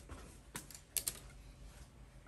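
A few light clicks, about half a second and a second in, from a plastic syringe and its packaging being handled with gloved hands.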